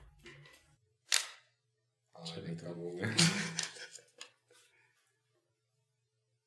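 A voice counting "one, two, three" in Romanian, preceded about a second in by one short, sharp hiss.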